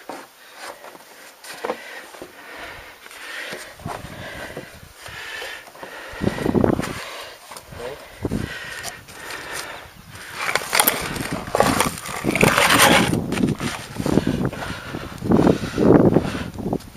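Scraping, knocking and rustling of a person climbing a weathered wooden cleated plank with gloved hands, in irregular bursts that grow louder in the second half.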